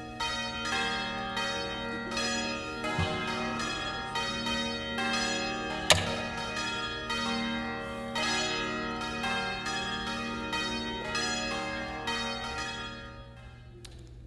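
Bells ringing in a steady run of struck notes, a little under two a second, each ringing on into the next, with one sharp click about six seconds in; the ringing fades out near the end.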